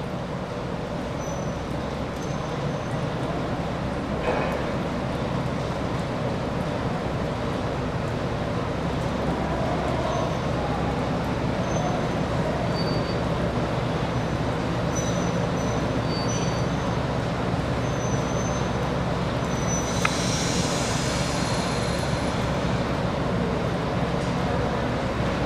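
Diesel multiple-unit railcar's engines running steadily as the unit creeps slowly along the shed road, with faint short high squeaks. Near the end comes a burst of air hissing lasting about two seconds.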